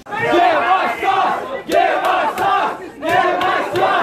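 A large crowd of young men shouting together in unison, three loud shouted phrases in a row with short breaks between them.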